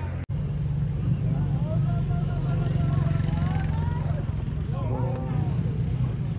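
Voices of people talking at a distance over a steady low rumble, with a split-second dropout just after the start.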